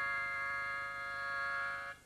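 One long chord held on a free-reed instrument, stopping just before a short gap.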